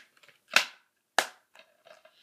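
A plastic DVD case being handled and snapped shut: two sharp clacks a little over half a second apart, followed by a few faint ticks.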